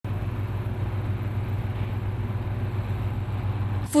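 Combine harvester running steadily as it cuts wheat: a steady low engine hum with an even rushing noise over it.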